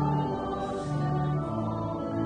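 A congregation singing a slow hymn to instrumental accompaniment, moving in long, held notes.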